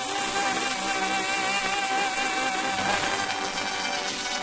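A 1969 Italian pop song playing from a 45 rpm vinyl single on a turntable, with long held notes.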